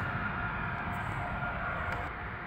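Steady indoor machine hum with a faint high whine running under it, and a couple of light clicks.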